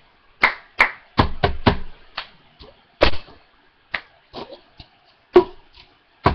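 Cup song routine: hand claps and a cup tapped and slapped down on a tabletop, about a dozen sharp hits in a quick, uneven rhythm.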